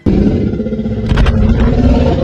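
Loud cinematic outro sound starting abruptly: a deep rumble with a held low tone, and a cluster of sharp hits a little past a second in.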